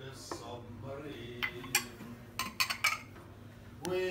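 Glasses clinking: a couple of sharp clinks about a second and a half in, then a quick run of several more around two and a half to three seconds, over low voices.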